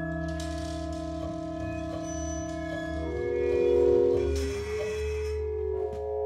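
Free-improvised ensemble music: a double bass bowed in long sustained tones, layered with other held pitches that shift to new notes about three seconds in, and a hissy high wash over most of it.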